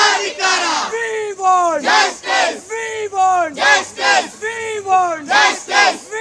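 A group of women protesters shouting slogans together, loud short chanted phrases that fall in pitch and follow one another in a quick, steady rhythm.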